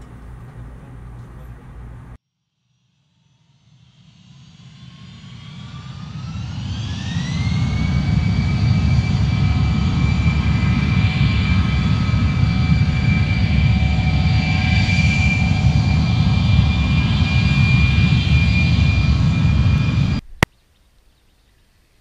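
A jet-engine sound: a whine that fades in and rises in pitch over a few seconds, then holds steady over a heavy low rumble. It cuts off abruptly with a click near the end.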